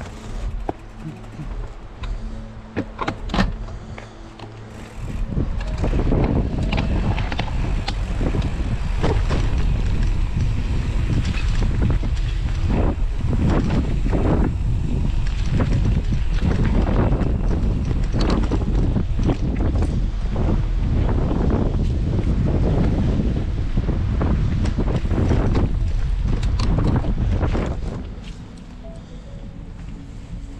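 Mountain bike rolling over a rough dirt and gravel trail: tyre crunch with a dense run of clicks and knocks from the bike, under wind noise on the microphone. Quieter for the first few seconds, then loud and continuous from about six seconds in until it drops back near the end.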